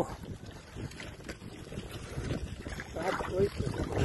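Water sloshing and lapping in a metal livestock trough as sheep drink, with wind rumbling on the microphone. A brief call is heard near the end.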